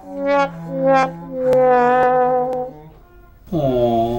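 Trombone playing the descending "sad trombone" wah-wah-wah-waaah, the comic sound of failure: held notes stepping down in pitch, the last held longest. A voice starts near the end.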